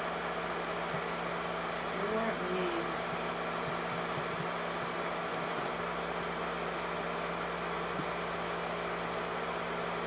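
Steady mechanical hum of a home-movie film projector running, holding a few fixed tones. A brief faint murmur of a voice comes about two seconds in.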